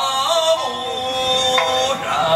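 A man singing an Okinawan folk song to his own sanshin accompaniment. He holds one long note that slides down a step about half a second in, and moves to a new, higher note near the end.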